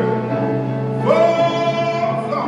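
A gospel solo sung in church, with one long held note from about halfway through.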